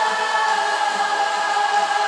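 Layered voices holding one long wordless note, choir-like, from an AI-isolated rock vocal track.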